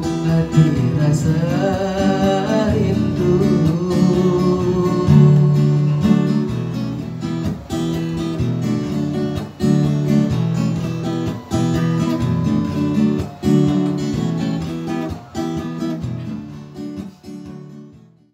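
Acoustic guitar strumming the closing chords of a dangdut song, struck about every two seconds and dying away near the end.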